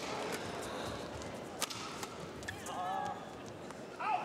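Badminton racket striking the shuttlecock during a rally: one sharp hit about one and a half seconds in, with fainter hits before and after it, over a steady arena hum. A brief wavering squeak sounds near the three-second mark.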